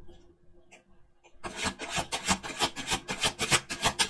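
A deck of tarot cards being shuffled by hand, a rapid run of card-on-card flicks and rasps starting about a second and a half in.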